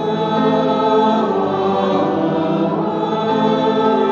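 Church choir singing the responsorial psalm of the Mass in held, sustained notes.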